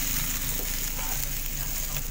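Chicken and meat pieces sizzling in an open double-sided frying pan: a steady frying hiss with faint crackles.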